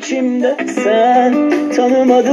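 Sony CFD-S03CP portable CD/cassette radio playing a cassette through its built-in speakers: a song with a voice over plucked strings.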